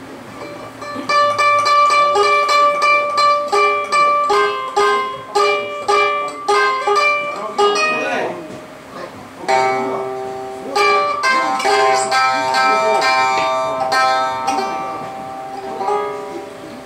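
A minmin, the small three-stringed plucked instrument of Tsugaru, played in quick runs of plucked notes. It breaks off briefly about halfway with a sliding note, then starts again with more phrases.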